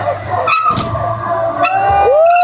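Background music with a steady low bass line. A long, held voice-like cry starts near the end.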